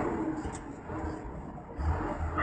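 Engine and road noise of a heavy vehicle heard inside its cab while driving, a steady rumble with a faint drone.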